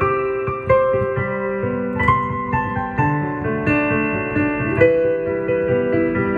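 Solo piano playing a pop-song melody over sustained chords, the notes struck one after another and left to ring.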